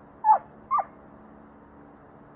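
Two short animal calls about half a second apart, each sliding down in pitch, over a faint steady background hiss.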